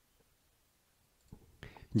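Near silence: a pause in the narration. A few faint clicks come in the second half, and a narrator's voice starts speaking Spanish right at the end.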